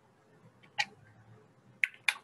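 Computer mouse button clicking: two short, sharp clicks about a second apart, with a third starting right at the end.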